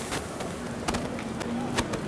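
Busy city street ambience: a steady wash of traffic noise with a few sharp knocks, the loudest near the end, and a faint steady hum coming in under a second in.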